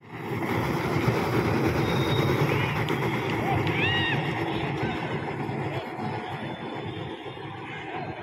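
Car tyres dragged on ropes across a gravel ground, a continuous rough scraping rumble that eases a little in the second half. A few short high-pitched calls cut through it about halfway.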